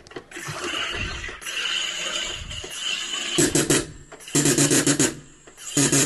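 SodaStream carbonator with a glass bottle: CO2 hisses into the bottle for about three seconds. Then come three loud buzzing bursts, the pressure-relief 'fart' that signals the bottle has reached full carbonation.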